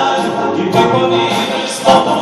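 Male vocal ensemble singing a song in close harmony through a concert PA, with a soloist's voice over the group; a sharp loud accent comes just before the end.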